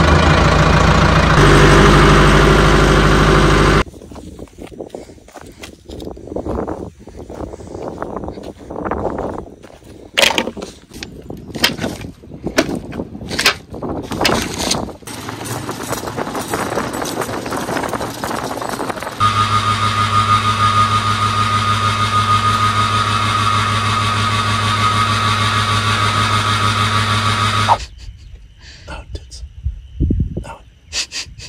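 Compact tractor's diesel engine running loudly for the first few seconds. It cuts off suddenly and gives way to irregular knocks and clatter, then to a steady drone that starts and stops abruptly.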